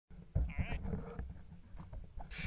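A man's short, wavering vocal sound about half a second in, over low rumbling thumps.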